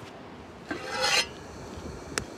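A short scraping rasp, about half a second long, a little over half a second in, over faint steady hiss.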